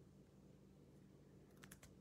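Near silence: faint room tone with a steady low hum, and a few faint short clicks in the last half second.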